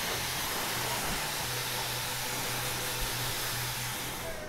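Dyson Supersonic hair dryer blowing steadily: an even rush of air with a low steady hum under it.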